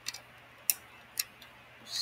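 Plastic LEGO pieces clicking as a small logo piece is pulled off and pressed onto a LEGO camera model: three sharp clicks about half a second apart, the second the loudest.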